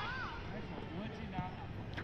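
Faint, distant voices of children calling out during a soccer game, over steady low outdoor background noise.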